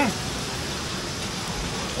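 A short 'mm' from a man's voice, then a steady, even hiss of outdoor background noise.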